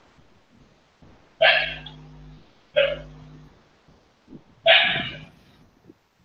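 Three short, sharp vocal sounds about a second and a half apart, each starting suddenly and fading quickly, heard through video-call audio with a low hum under them.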